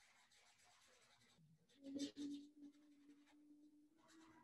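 Faint scratchy strokes of a paintbrush on a canvas, with a short louder scrape about halfway through.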